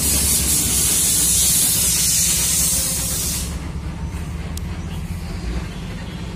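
A loud, steady spraying hiss, like a jet of air or water, that cuts off about three and a half seconds in, over a low steady hum.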